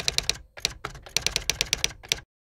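Typing sound effect: rapid keystroke clicks in quick runs, with a short pause about half a second in.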